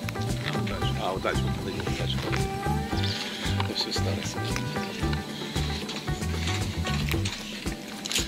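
Background music with a stepping bass line and held tones, the bass dropping out near the end.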